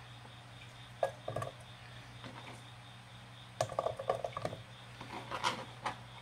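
Carrot slices dropped by hand into an oiled nonstick wok: a few soft taps about a second in, then a short run of clattering taps around three and a half to four and a half seconds in, over a low steady hum.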